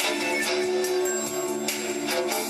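Music: a wooden flute melody of held notes played over an amplified backing track with a steady beat, about two beats a second.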